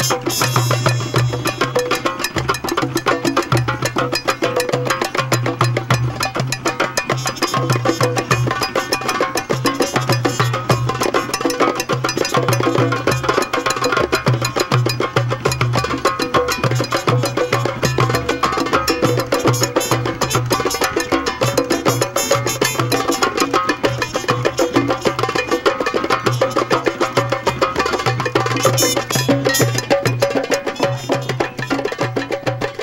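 Drum circle: several hand drums, djembes among them, playing a fast, dense rhythm of sharp strokes over a pulsing low bass beat.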